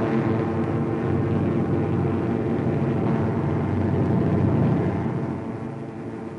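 A steady, low engine-like drone with a dense, even hum, fading away near the end.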